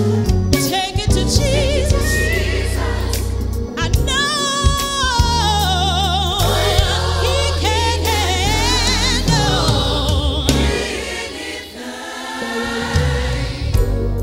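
Gospel song: lead and choir voices singing held, wavering runs over a band with a heavy low bass line. Near the end the bass drops out briefly and the level dips before the band comes back in.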